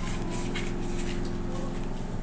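A steady low background hum with faint handling noise as a plastic spice jar's screw cap is twisted on.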